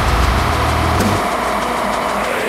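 A man doing a metal growl: one long, rough vocal rumble with no clear pitch, lasting a little under three seconds.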